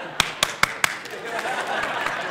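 Audience laughing after a punchline, with four quick hand claps in the first second.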